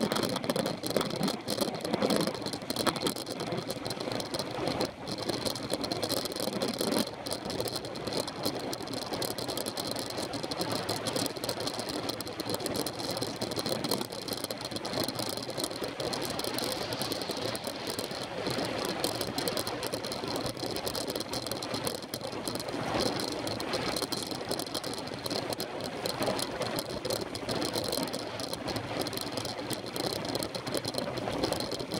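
Steady wind and road noise picked up by a camera mounted on a road bicycle riding at speed, with rattling from the bike and mount over the road surface. A faint steady high tone runs underneath.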